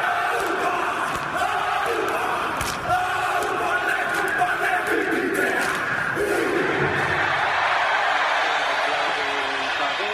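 A large football crowd singing a chant together, many voices holding long notes over crowd noise.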